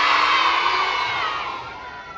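A crowd of young children cheering and shouting together, dying down near the end.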